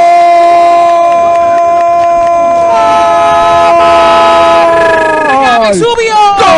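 Football radio commentator's long held goal cry, a single drawn-out "gooool" kept at one steady pitch for about five seconds, its pitch falling away near the end as a fresh cry begins.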